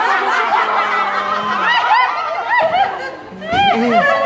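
A group of people laughing and chattering together, with quick runs of high giggles in the second half.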